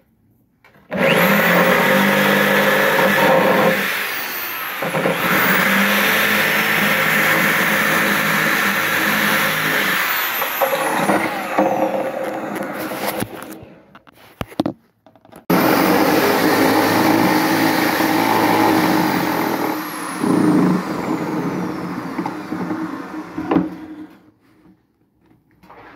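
Handheld electric grinder cutting into a resin bust. It runs for about twelve seconds, stops briefly, then runs again for about eight seconds, its pitch shifting as the load on it changes.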